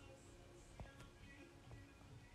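Near silence: faint room tone with a couple of faint clicks about a second in.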